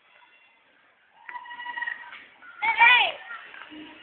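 High-pitched human voices: a held, wavering call starting about a second in, then a short, loud yell whose pitch rises and falls near the end.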